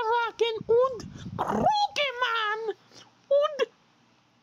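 A child's high voice making a quick run of short, wordless calls, one after another, with one last call after a pause near the end.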